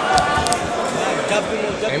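Two sharp smacks from the fighters in the ring, one about a fifth of a second in and another at half a second, over steady ringside voices; a shouted "Eh" comes right at the end.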